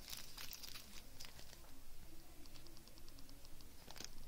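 Faint crinkling of small clear plastic bags of diamond painting drills being handled and turned in the hands, with a few short crackles. A faint, fast, even ticking comes in about halfway through.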